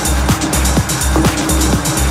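Techno track with a steady four-on-the-floor kick drum, about two beats a second, a pulsing bass note between the kicks, a held synth tone and hi-hats.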